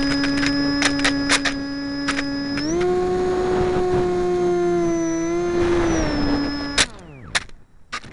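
Motor and propeller of a radio-controlled flying boat sliding on snow, heard from its onboard camera: a steady hum that steps up in pitch about three seconds in as the throttle opens, drops back near six seconds and cuts off sharply about a second before the end. Scattered sharp clicks come through the hum.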